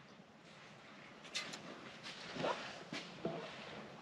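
Quiet room tone with a few faint, brief taps of handling noise, spaced about a second apart.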